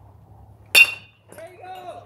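A metal baseball bat hits a pitched ball about three quarters of a second in: one sharp, ringing ping. Voices shout right after the hit.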